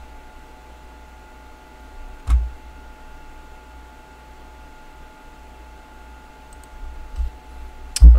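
Quiet room tone with a low steady hum, broken by a single sharp thump about two seconds in and a few softer knocks near the end.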